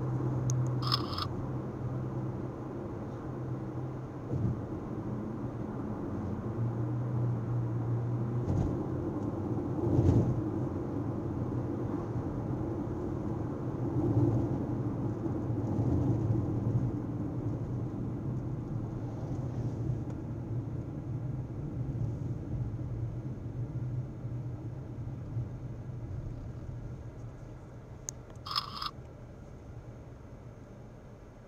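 Steady road and engine noise of a car driving, heard from inside the cabin, getting quieter near the end. A short high-pitched sound comes about a second in and again near the end.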